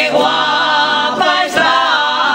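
A crowd of women and men singing together, holding long sung notes, with a brief break for breath about a second and a half in.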